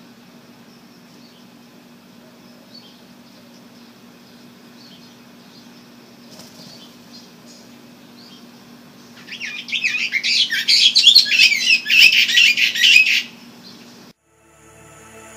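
Faint scattered chirps of small birds, then a bird chattering loudly and rapidly close by for about four seconds before stopping abruptly.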